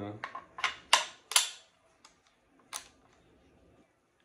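AR-15 pistol upper receiver being fitted back onto its lower receiver: a quick run of sharp metal-on-metal clicks and clacks in the first second and a half, the two loudest close together, then one more click near the three-second mark.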